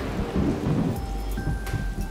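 Rain and rolling thunder sound effects in an animated logo sting: steady rain with a deep rumble, and a few steady high tones coming in about halfway.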